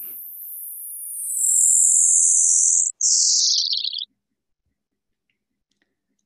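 Sonified radio signal of fast radio burst FRB 121102: a loud, high whistle gliding steadily downward in pitch, higher frequencies first and lower ones later, the audible form of the burst's dispersion. It breaks briefly about three seconds in, falls on to a lower tone and stops about four seconds in.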